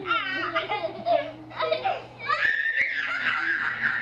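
Children laughing and giggling, then from about two seconds in a child's long high-pitched squeal.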